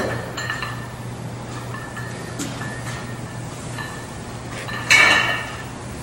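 Iron weight plates on a curl bar clinking lightly as the bar is curled. About five seconds in comes one louder, ringing metal clank as the bar is set down.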